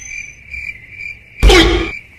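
Steady high chirring of crickets in thick undergrowth, with a loud burst lasting about half a second about one and a half seconds in.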